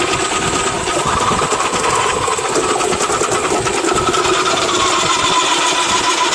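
Electric food processor with a shredding attachment running steadily under load as it grates potatoes, its motor giving a continuous whine with the rasp of the shredding disc.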